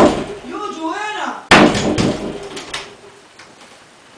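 A short burst of a person's voice, then a door banging with one sudden loud thud about a second and a half in, fading over the next second.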